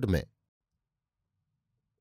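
A man's voice ends a word, then near silence: a clean pause in a studio narration.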